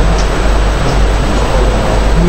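Steady, loud rushing noise with a low hum underneath, unchanging throughout.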